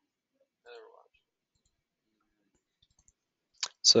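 Near silence: room tone, with one brief faint sound about a second in. Speech begins just before the end.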